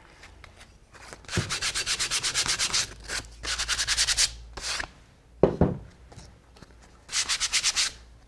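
Sandpaper rubbed by hand over a block of salvaged scrap construction wood in quick back-and-forth strokes, about eight a second, in three bursts with short pauses between.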